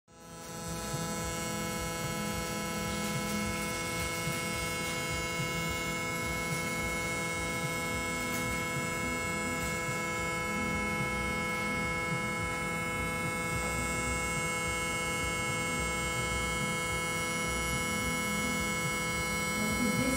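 Vitrectomy machine running steadily during vitreous cutting in a training eye model: a constant electric hum with several fixed high tones.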